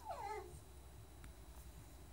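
A dog's brief whine, falling in pitch, in the first half second, then faint room tone with one faint click.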